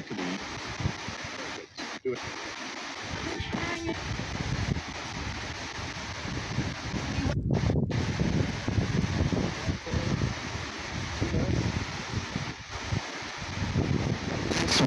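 S-box ghost scanner (spirit box) sweeping radio channels: a steady hiss of static that cuts out briefly several times, with faint snatches of broadcast voices. A low rumble of wind on the microphone builds from about four seconds in.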